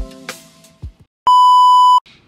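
Background music trailing off with one last low drum hit, then a loud, steady test-tone beep of the kind that goes with television colour bars, starting just past halfway and cut off abruptly.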